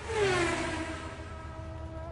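Electronic chillout track: a loud synthesized sweep sets in just after the start, its stack of tones gliding down over about half a second and settling into held notes over a steady low bass.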